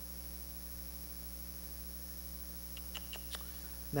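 Steady low electrical mains hum, with a few faint clicks about three seconds in.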